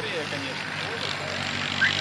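A racing tractor's engine running steadily at speed, with faint voices in the background.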